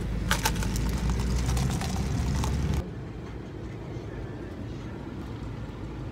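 Car cabin rumble with a rapid run of clicks and rattles from a plastic iced-coffee cup being handled close to the microphone; about three seconds in it cuts off abruptly to a quieter, steady cabin hum.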